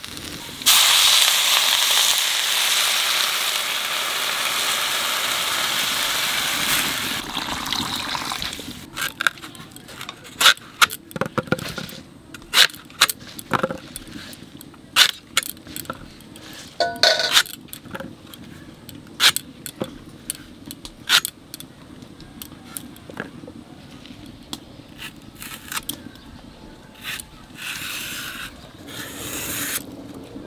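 Elephant foot yam pieces frying in a wok: a loud sizzle starts suddenly about a second in as something is added, and dies down after about eight seconds. Then come irregular sharp clicks and snaps as elephant foot yam stalks are cut and peeled on a boti blade.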